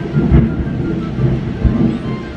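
Thunder rumbling, loud and low, with heavier swells about half a second in and again near the end.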